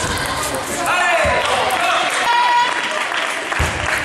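Table tennis rally in a large sports hall: players' shoes squeaking on the court floor in short, high squeals, and feet thudding as they shift and lunge, with the ball's light clicks off bats and table.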